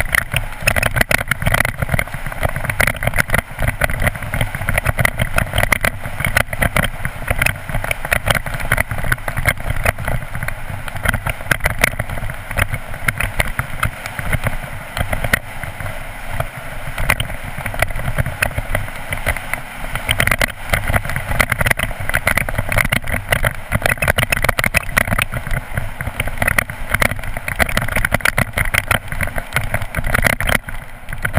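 Mountain bike descending fast on a loose gravel track, heard from a helmet camera: a continuous rumble of tyres over stones, with rapid rattling and clattering from the bike over the rough surface.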